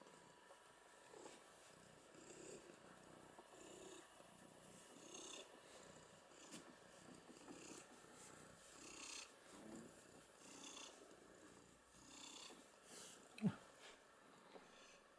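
Domestic cat purring faintly close to the microphone, in a slow, even rhythm of about one breath cycle every second and a bit. A single sharp thump comes about half a second before the end.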